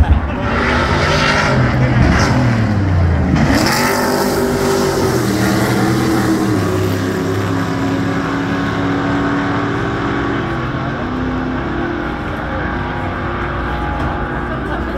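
Race cars passing at speed on a street circuit: two loud passes, about half a second and three and a half seconds in, each dropping in pitch as it goes by. After them, engines keep running at a distance, their notes stepping up and down.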